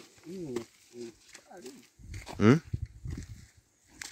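A person's voice: short bits of quiet speech, then a louder rising vocal sound about halfway through.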